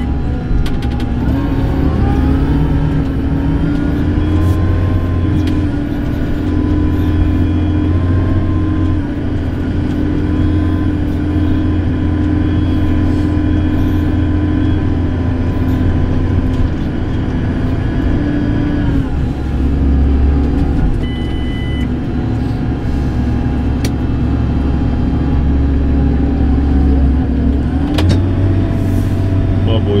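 JCB Fastrac tractor's diesel engine running steadily, heard from inside the cab with a strong low hum. Its pitch rises about a second and a half in, drops around two-thirds of the way through and rises again near the end. A brief electronic beep sounds once in the cab.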